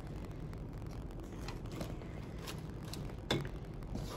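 Two wooden spatulas tossing sliced pork in a nonstick wok: faint scrapes and soft taps, with one sharper knock a little before the end. A steady low hum runs underneath.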